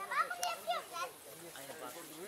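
Children's voices talking and calling out briefly, mostly in the first second, then quieter.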